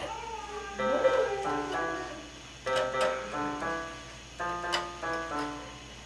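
Portable electronic keyboard played one note at a time, slow and halting, in little groups of notes with short pauses between, as a small child's finger is guided over the keys.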